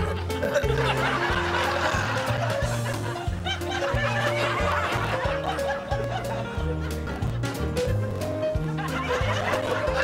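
Light background music with a bass line, under a steady laugh track of people laughing.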